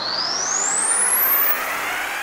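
A riser transition sound effect: a rushing whoosh that climbs steadily in pitch and tops out about one and a half seconds in.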